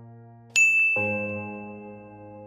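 A bright bell-like notification ding about half a second in, its high tone ringing on, typical of an animated subscribe-button bell. It sounds over sustained musical chords, which change to a louder chord about a second in.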